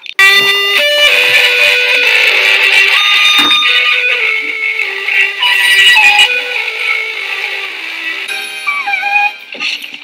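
Instrumental music: a melody of sustained notes, changing character near the end with a short falling glide.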